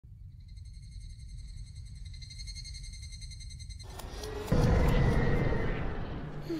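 Anime sound effects: a low rumble under a faint high ringing tone, then, about four seconds in, a loud rushing blast with a heavy low rumble that slowly fades.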